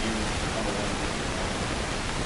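Steady hiss of room noise, with a faint, distant voice near the start.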